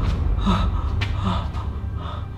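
A person breathing hard in a steady rhythm, about one breath every three-quarters of a second, over a low, steady rumble.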